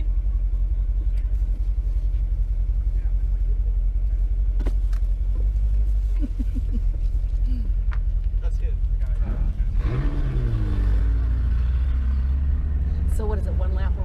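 Sports car engine idling steadily, heard from inside the cabin, then revving up with a rising pitch about ten seconds in as the car pulls away.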